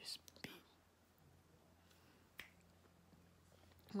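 Near silence: room tone with a low hum, a few soft clicks and breathy sounds in the first half second, and one faint click about halfway through.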